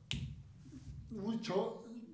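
A single sharp click right at the start, then a man speaking from about a second in.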